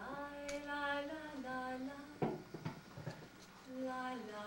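A cappella singing voice holding long notes that step up and down in pitch, with a brief sharp noise about two seconds in.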